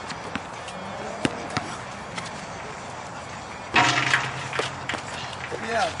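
Pickup basketball on an outdoor concrete court: scattered knocks of the ball and shoes on the court, with a louder bang a little under four seconds in and a voice near the end.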